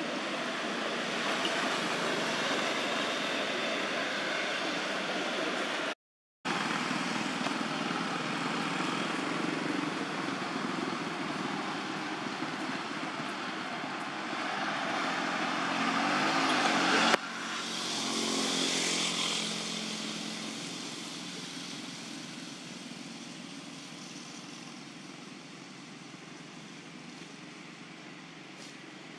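Steady background noise of motor traffic. A little past halfway, a passing vehicle's engine rises in pitch and then cuts off abruptly. There is a brief dropout to silence about six seconds in.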